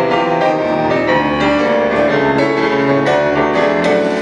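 Grand piano played live, an instrumental passage of quick successive notes ringing over sustained low bass notes.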